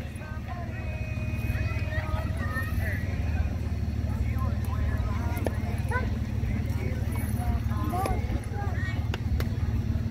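Indistinct voices of softball players calling out across the field, over a steady low rumble, with a few faint sharp clicks.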